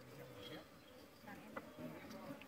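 Faint buzzing of honeybees around an opened wooden hive.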